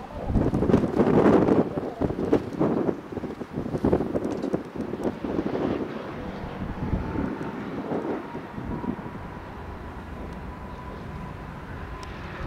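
Wind buffeting the microphone, with a faint thin whine rising in pitch from about halfway and then holding steady: the CFM LEAP-1A engines of an Airbus A320neo spooling up for takeoff.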